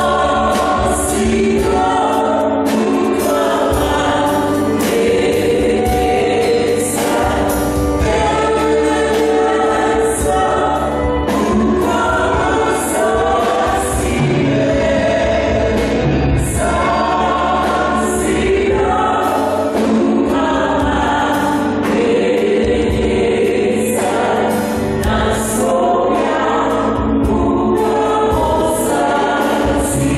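Church choir singing a hymn over instrumental accompaniment, with a steady high percussion beat.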